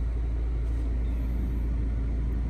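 Steady low rumble of a car with its engine running, heard inside the cabin.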